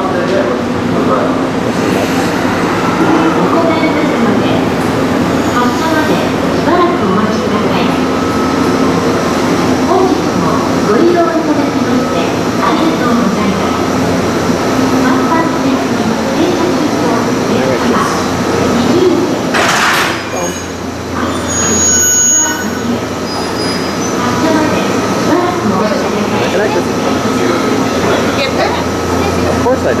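A Narita Express E259-series electric train easing slowly up to a second set to couple, with a steady low hum under background voices. About twenty seconds in there is a short sharp burst as the couplers meet and lock.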